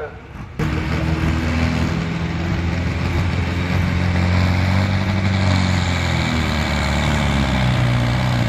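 Diesel engine of a pulling tractor opening up to full throttle suddenly about half a second in and held flat out under heavy load as it drags the sled, its pitch dropping slightly near the end.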